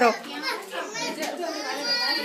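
Indistinct chatter of several voices talking over one another, children's voices among them.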